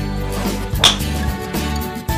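Background guitar music, cut through about a second in by one sharp crack: a Callaway Great Big Bertha Epic driver striking a golf ball.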